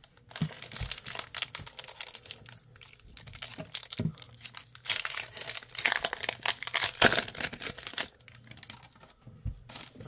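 Foil wrapper of a 2023 Panini Score football card pack crinkling and tearing as it is ripped open by hand, an irregular crackle with its sharpest, loudest crack about seven seconds in.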